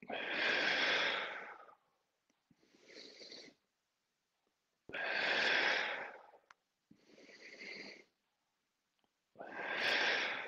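A man breathing hard and audibly in time with slow exercise repetitions: three loud breaths, about one every four to five seconds, with a quieter breath between each.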